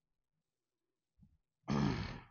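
Near silence, then near the end a man's short, breathy vocal grunt.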